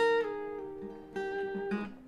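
Steel-string acoustic guitar with a capo at the first fret, picking a riff of single notes that ring into each other. A group of notes sounds at the start and another about a second in, then they die away near the end.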